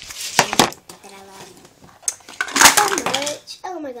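Blush compacts falling and clattering, with sharp knocks about half a second in and a louder cluster around two to three seconds in, while a young girl's voice cries out over them.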